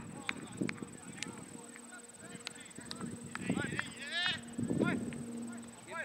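Cricket players' voices calling out on an open field, a few short shouts among scattered sharp clicks, with a faint steady high whine throughout.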